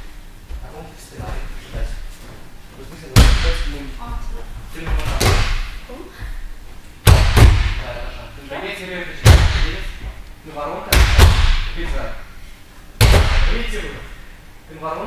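Sharp slaps on a gym mat that ring in the hall, about every two seconds, some coming as quick doubles: arms beating the mat as the boys roll back in back breakfalls.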